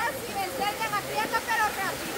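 Shallow river water running, with splashing as someone wades through it, under quieter talking voices.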